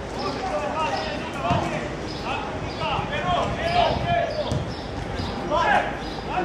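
Dull thuds of a football being kicked and struck a few times, with players calling and shouting to each other.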